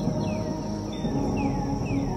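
Ambient music score of sustained, held tones, layered with a jungle ambience: a steady high insect drone and a few short falling bird whistles.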